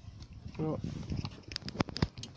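A man's voice saying a short 'ja', then a quick run of sharp clicks about a second and a half in.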